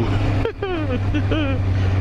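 A man's short laughing and voice sounds over the steady low drone of a motorcycle engine and wind noise while riding at road speed.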